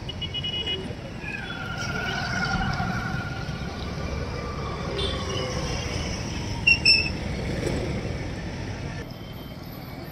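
Outdoor traffic ambience: a steady rumble of vehicles with voices in the background, and two short, loud high-pitched beeps close together about seven seconds in.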